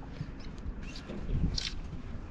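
Wind buffeting the microphone in an uneven low rumble, with a few short, faint scratchy rustles, the clearest one most of the way through.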